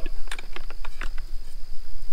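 A lens's metal foot tapping and clicking against the Arca-Swiss-type clamp of a ground pod: a quick run of light clicks. The foot will not seat because the clamp is not yet opened wide enough.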